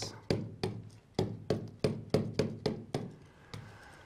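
A stylus tapping against the glass of a touchscreen display as letters are written: a quick, uneven run of sharp taps, about five a second, that stops about three seconds in.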